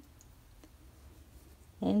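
Quiet handling of crocheted fabric, hook and yarn, with a few faint soft clicks over low room tone; a woman starts speaking near the end.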